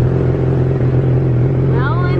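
Car engine idling, a steady low hum that holds even throughout.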